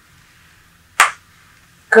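A single sharp, loud clap-like hit about a second in, with a brief ring after it.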